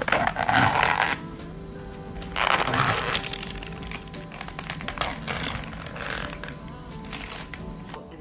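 Background music, over which a plastic takeout bag and plastic food containers rustle and crinkle in several noisy bursts, loudest in the first second and again about two and a half seconds in.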